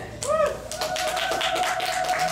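Audience clapping as the music stops, with a voice calling out and then holding one long high cheering note over the claps.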